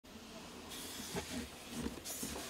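Handling noise: white cotton-gloved hands gripping and rubbing a mirrorless camera and its wide-angle zoom lens, with a soft rustle and a few muffled scrapes and bumps.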